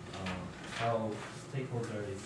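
Quiet, indistinct speech in a classroom, too low to make out words.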